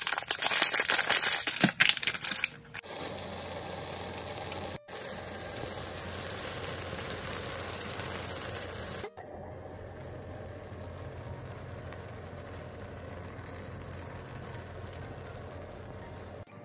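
A pan of cheese ramen and rice cakes cooking: loud crackling for about the first three seconds, then a steady simmering hiss over a low hum, broken off abruptly twice.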